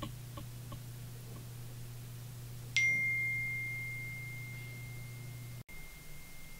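A single bell-like ding about three seconds in, one clear high tone that rings on and slowly fades: a phone notification chime. Under it runs a low steady hum that stops abruptly near the end.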